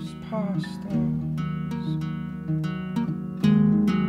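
Fingerpicked acoustic guitar playing a song passage, with a louder chord struck about three and a half seconds in.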